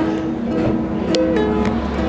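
Ukulele being played, a run of plucked notes changing pitch every fraction of a second.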